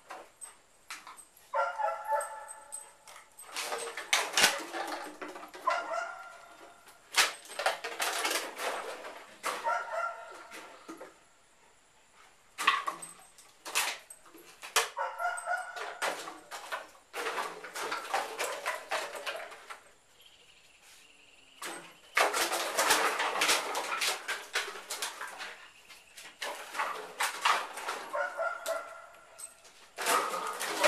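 Empty plastic bottles clattering and rattling on a concrete floor as a dog pushes through them, in repeated bursts of clicks and knocks with short pauses between.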